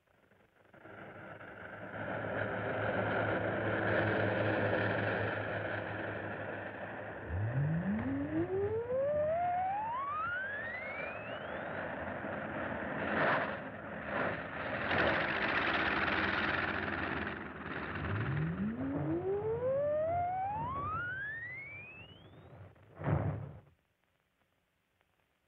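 Film sound effect of humming electrical machinery: a steady hum and whirr, with a whine that rises in pitch over about four seconds, twice, and a short loud burst just before it cuts off.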